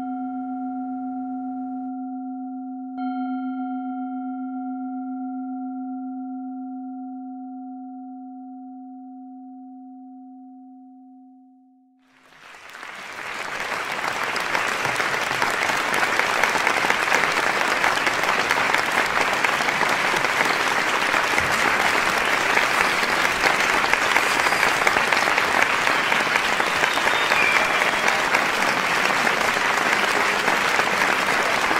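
A gong is struck and rings with a steady, slowly fading tone. It is struck again about three seconds in and dies away by about twelve seconds, and then applause swells up and carries on steadily.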